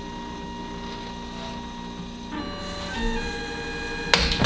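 3D printer's stepper motors driving a clay paste extruder, running with a steady whine of several tones that shifts to new pitches about two and a half seconds in and again at three seconds. The extruder's stepper is being run on a slightly raised voltage because it was too weak to turn the extruder's gear wheel.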